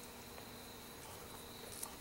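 Faint steady insect chorus, a thin high-pitched trill held without a break, with one light tap near the end.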